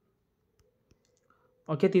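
Near silence with a faint hum and a few soft, scattered clicks, then a man's voice saying "okay" near the end.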